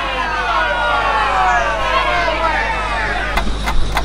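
Edited-in sound effects: many overlapping tones sliding slowly downward, like a falling siren, then a ticking clock starting near the end, about four ticks a second.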